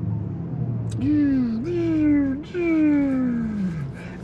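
Porsche Taycan's synthetic Electric Sport Sound playing in the cabin: a smooth, spaceship-like tone that starts about a second in, steps up in pitch twice, then slides down in one long falling glide. Underneath it is a steady low hum.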